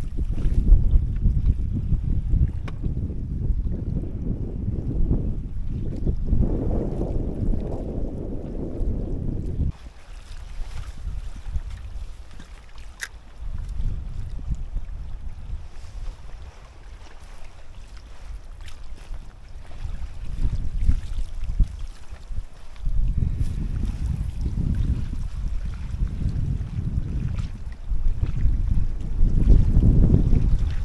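Wind buffeting the microphone in gusts, a deep rumble. It is strong at first, drops off suddenly about ten seconds in, and picks up again in the last several seconds. A single sharp click about halfway through.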